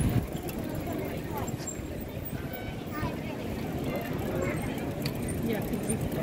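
Outdoor street ambience of scattered chatter and calls from passing cyclists and pedestrians over a steady low rumble.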